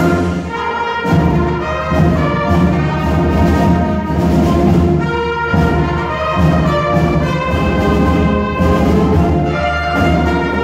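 Middle-school concert band playing a march-style arrangement, with brass instruments prominent over the full ensemble.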